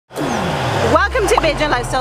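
A swoosh that falls in pitch over the first second, like a car racing past, then a woman's voice starts speaking.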